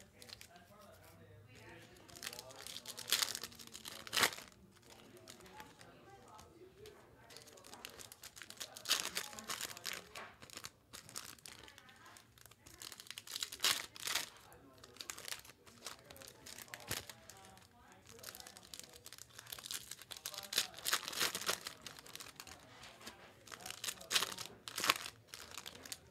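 Foil trading-card pack wrappers being torn open and crinkled, in irregular bursts of crackling and rustling.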